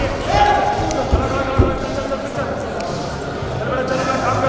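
Thuds and scuffs of two wrestlers' feet and bodies on the wrestling mat as they scramble and tie up, with two sharper thumps a little after a second in.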